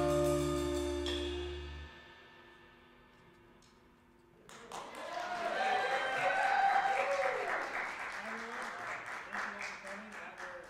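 A small jazz ensemble of horns, piano, bass and drums holds its final chord, which fades and stops about two seconds in. After a short hush, the audience breaks into applause with a few cheers.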